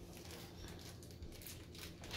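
Faint, intermittent crinkling of a plastic bag being handled and pulled at by the top.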